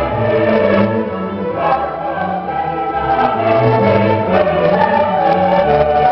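A choir singing with a string orchestra in a Baroque choral piece, continuous and full, over a moving bass line.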